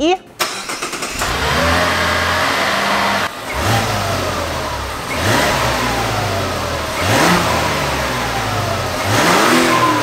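Mazda CX-90 Turbo S's turbocharged inline-six engine running at standstill, heard through its exhaust and revved up and let fall back about four times, roughly every two seconds.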